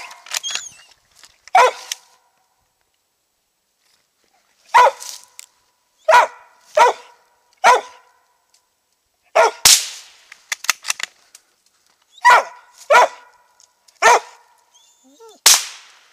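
Treeing Mountain View Cur barking: about nine single barks spaced one to three seconds apart. Two sharp cracks stand out as the loudest sounds, one about ten seconds in and one near the end.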